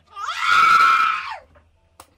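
A person screaming once: a single high scream of a little over a second that rises in pitch at the start and drops away at the end.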